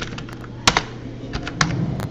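Computer keyboard being typed on: about six separate keystrokes at an unhurried, uneven pace.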